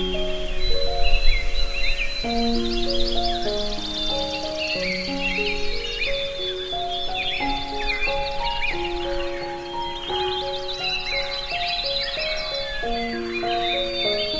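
A slow, soft piano melody of single sustained notes, with birdsong layered over it: many birds chirping and trilling high above the piano throughout.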